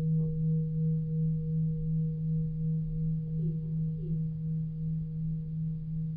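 A single low sustained tone with a fainter higher overtone, wavering slightly in loudness and slowly fading.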